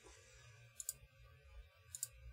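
Near silence: room tone, with two faint short clicks, one a little under a second in and one near the end.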